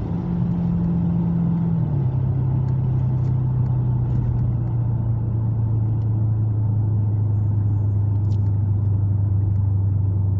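A Dodge 392 HEMI V8 running at cruise, heard from inside the cabin over tyre and road noise. Its note steps down in pitch about two seconds in, then slowly sinks lower as the car eases off.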